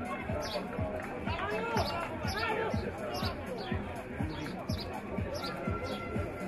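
A steady drum beat, about two and a half strokes a second, with spectators' voices shouting and calling over it.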